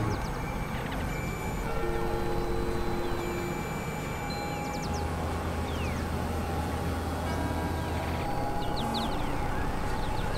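Experimental synthesizer noise music: a dense hiss-like noise bed with held tones that come and go, a low drone through the middle, and quick falling high glides now and then.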